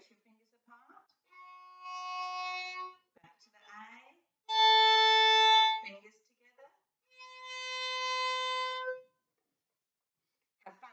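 A violin bowing three long, separate notes, each held for one to two seconds, each a little higher than the one before. The middle note is the loudest. This is a finger-pattern drill that switches the second finger between its high and low positions.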